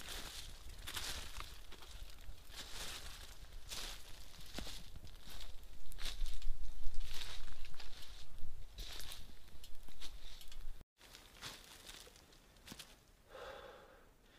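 Twigs burning in a Solo Stove wood-gas camp stove: the flames make irregular whooshing gusts over a low rumble, loudest about halfway through. The sound cuts off to quiet woodland ambience a few seconds before the end.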